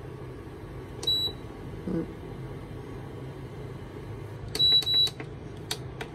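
Tescom TIH303 induction hob's control panel beeping as its heat-level buttons are pressed: one short high beep about a second in, then two quick beeps near five seconds. Under the beeps runs the hob's steady low hum.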